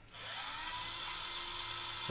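Small electric motor driving a wheel, starting just after the beginning and spinning up with a rising whine, then running steadily. It is running on the newly swapped-in battery, meant to give higher speeds.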